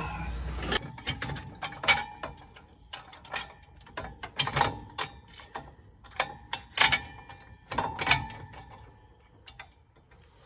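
Irregular metal clanks and knocks, some with a short ring, from the steel disc gang of an ATV/UTV disc harrow being handled and fitted to an implement bar.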